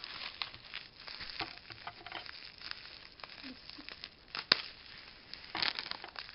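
Plastic bubble wrap being handled and crinkled, with irregular crackles and a sharp, louder snap about four and a half seconds in.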